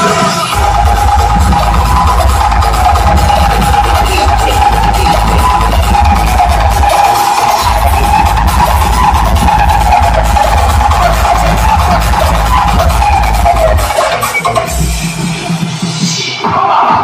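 Loud music played over a truck-mounted DJ sound system, with a heavy bass line that comes in about half a second in and drops out about two seconds before the end, under a steady melody.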